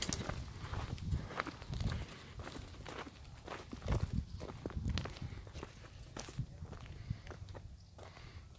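Footsteps of a person walking on a gravel dirt road: short, uneven steps, each with a dull thud.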